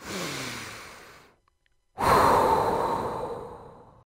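A person taking slow, deep breaths for a guided breathing exercise. A first breath lasts about a second and carries a faint sighing tone that drops in pitch. After a short pause comes a longer, louder breath that fades out.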